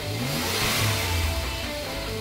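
A car engine revving and accelerating, its pitch rising near the start, over theme music.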